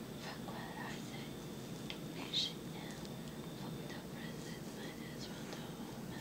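Faint whispering over a steady low room hum, with one short sharp click about two and a half seconds in.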